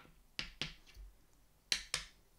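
A few short, soft clicks, two pairs about a second apart, with a faint low thump between them.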